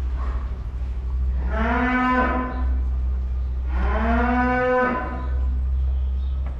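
A Holstein dairy cow mooing twice, two long calls about two seconds apart, over a steady low hum.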